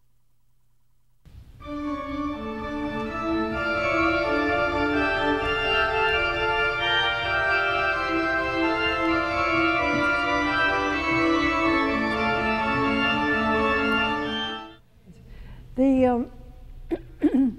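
Pipe organ playing a slow passage of sustained notes in several parts, beginning about a second and a half in and stopping shortly before the end. It is played all legato with little articulation, which the teacher hears as all being the same.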